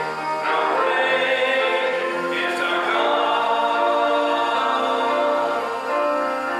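Slow church singing: voices on long, held notes that change pitch every second or two, with no beat.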